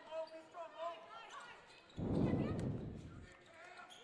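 A basketball bouncing on a hardwood gym floor during play, with faint voices in the hall. About halfway in, a sudden burst of noise starts and fades over about a second.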